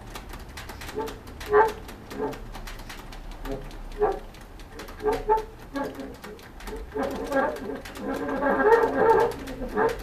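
Bassoon played with extended techniques in free improvisation: short, scattered pitched blips among small sharp clicks, then a longer, denser sustained tone from about seven seconds in until shortly before the end.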